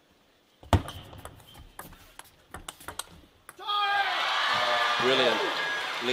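Table tennis rally: a sharp hit, then quick clicks of the celluloid ball against bats and table for about three seconds. As the point ends, a loud shout and crowd cheering take over.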